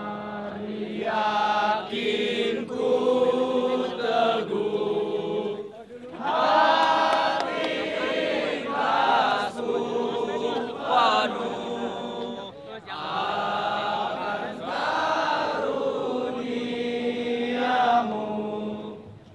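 A crowd of young men singing together in unison, a chant-like song in long sustained phrases with short breaks between them.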